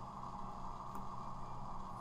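Steady low electrical hum and hiss from the recording chain: room tone, with one faint click about a second in.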